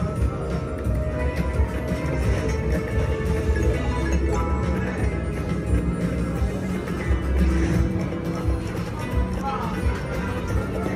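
Video slot machine game music and reel sound effects playing steadily during a bonus feature, with casino background noise underneath.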